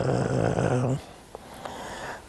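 A man's voice holding one long, level vocal sound, a drawn-out hesitation 'eeh' while he searches for words, cut off about a second in and followed by a short pause.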